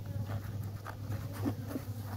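Honeybees buzzing around the entrance of the hive in a steady hum.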